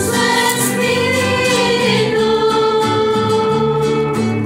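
A small group of women singing a religious song together with acoustic guitar accompaniment, holding one long note through the second half.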